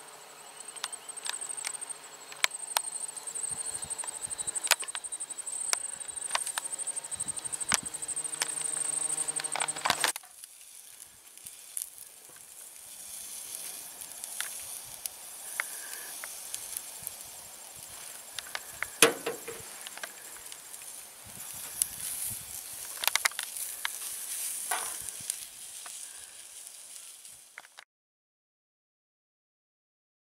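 Outdoor ambience with a high, steady insect trill, a low hum and scattered clicks. About ten seconds in it cuts to a softer hiss of sausages sizzling on a gas griddle, with a few knocks.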